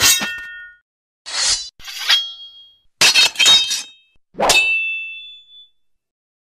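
A run of sharp metallic clangs, like sword blades striking, each leaving a high ringing tone. There are strikes at the start, around two seconds, a quick cluster at about three seconds, and a last strike that rings on for over a second.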